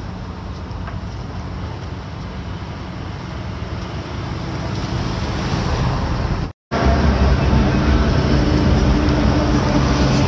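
Steady low rumble of road traffic. After a sudden cut, a louder steady drone with a low hum holding a few steady tones.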